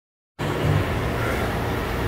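Treadmill running, with a steady low rumble from its motor and moving belt.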